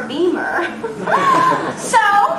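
Speech: a young woman talking with a chuckle in her voice.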